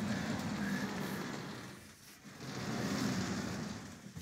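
Sliding chalkboard panels rumbling along their tracks as they are moved, in two pushes of about two seconds each.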